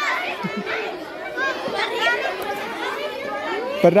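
Many children chattering and calling out at once, their high voices overlapping, as they scramble to form groups in a playground game.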